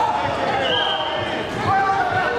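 Voices shouting and calling out in a large hall, some notes held long, over a string of short, dull low thumps.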